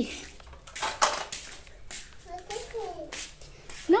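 A small child's brief high-pitched vocalizing about halfway through, among several short rustling or scraping noises, the loudest about a second in.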